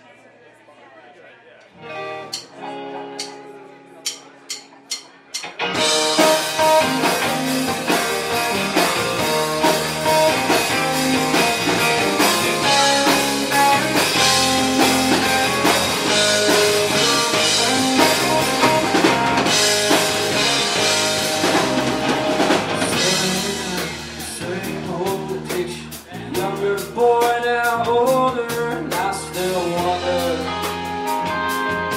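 Live rock band: a sustained electric guitar note and a few sharp clicks, then the full band of electric guitars, bass guitar and drum kit comes in loudly about six seconds in and plays on. A man's voice starts singing near the end.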